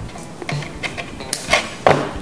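Small wire cutter snipping thin jewellery wire: a couple of short, sharp clicks in the second half, over background music.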